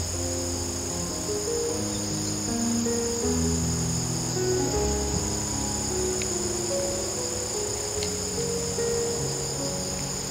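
Crickets trilling steadily and high-pitched, under soft background music of slow, held low notes.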